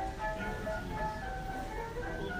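Background music: a light melody of short, high notes at shifting pitches, with no voices.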